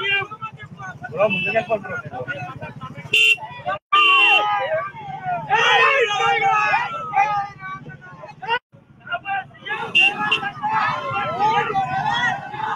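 Motorbike horns honking in repeated short blasts over a crowd of riders shouting and cheering, with motorcycle engines running underneath. The sound cuts out abruptly twice.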